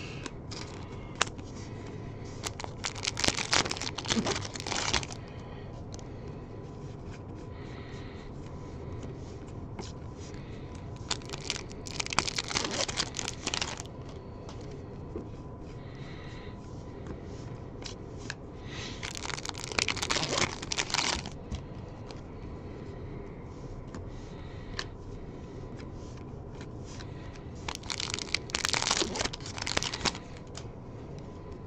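Crinkling and tearing of trading-card pack wrappers and a plastic card sleeve, in four bursts several seconds apart, with quieter handling of the cards between.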